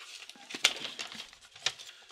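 Paper and packaging rustling and crinkling as a letter is handled, with a few sharp crackles.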